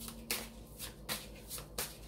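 A Rider-Waite Radiant tarot deck being shuffled by hand: a rapid run of short papery card strokes, about four a second.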